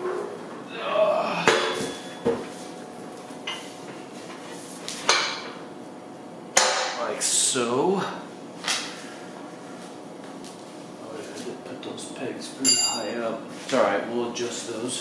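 Powder-coated steel ATV snow plow blade and its push-tube frame clanking as they are flipped over and fitted together: a string of separate sharp metal knocks, the loudest about six and a half seconds in, and a short ringing clink near the end.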